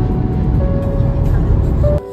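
Loud low rumble of road noise inside a moving vehicle, under background music; the rumble cuts off suddenly at the end.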